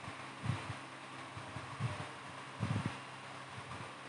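Quiet room hiss with a few soft, low handling bumps from a hand turning the voltage-regulator knob on an electronics trainer panel.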